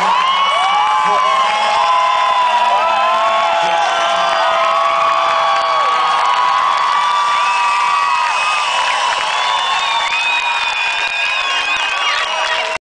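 Large concert crowd cheering and shouting, many voices overlapping in a steady loud din.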